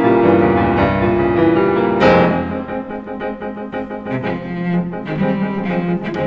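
Cello and piano of a piano trio playing a classical piece, the cello bowing sustained notes over the piano's chords, with a loud accented attack about two seconds in.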